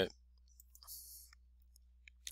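A few faint computer mouse clicks against near silence, with a short soft hiss about a second in.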